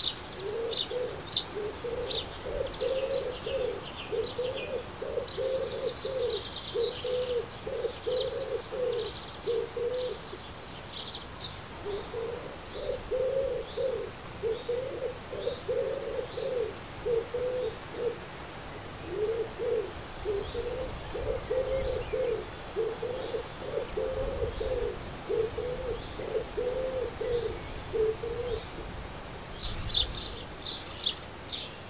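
A pigeon cooing in three long bouts of repeated phrases, each bout ending on a single short coo. Small birds chirp high above it in the first few seconds and again at the end, with a faint high call repeating about once a second in between.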